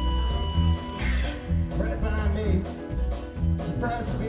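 A live band plays an instrumental vamp: an electric bass line and drum kit with electric guitar and keyboards. Held tones drop out about a second in, and a lead part that wavers in pitch comes in over the groove.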